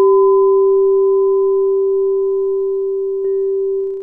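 A struck metal bell tone ringing on at one steady pitch with several higher overtones, slowly fading. A faint second tap comes about three seconds in, and the ring dies away near the end.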